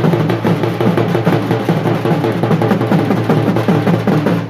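Several large double-headed drums beaten with sticks in a fast, dense folk rhythm, loud and continuous.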